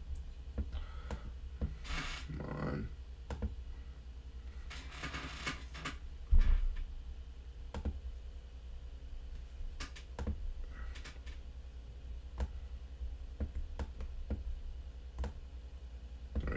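Scattered clicks and keystrokes on a computer keyboard and mouse, over a steady low hum, with a single loud thump about six seconds in.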